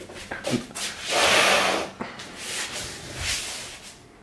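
Rustling and shuffling of a man in a tracksuit and slides getting down onto a laminate floor: a loud rustle lasting about a second near the middle, then softer rustles and a dull thump as he lands in a push-up position.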